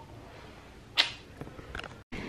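Quiet room tone with one sudden short swish about a second in, followed by a couple of faint clicks.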